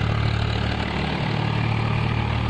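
Steady wind rumble on the phone's microphone, a loud low buffeting with an even rushing hiss above it.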